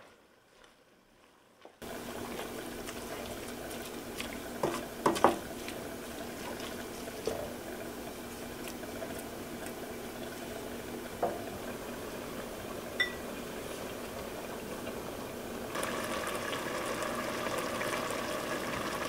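Chickpea curry simmering in a stainless steel pot, a steady bubbling hiss that grows louder near the end, with a few light knocks of a wooden spoon against the pot as it is stirred. The first two seconds are near silent.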